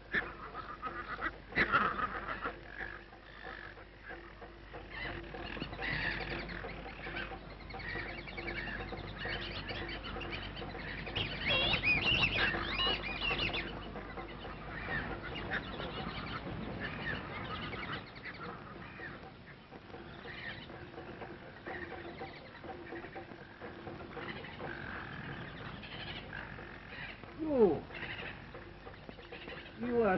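Animal and bird calls, a busy mix of short gliding cries that is densest about twelve seconds in, with one long falling call near the end.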